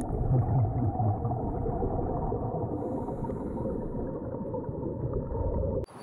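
Muffled underwater noise picked up through a dive camera's housing: a steady low gurgling wash with nothing in the upper pitches, cutting off abruptly near the end.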